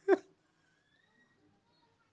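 One short vocal syllable from the reciting voice at the very start, then near silence for the rest.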